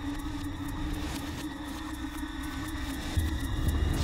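Suspense background score: held drone tones over a low rumble that swells, growing louder near the end.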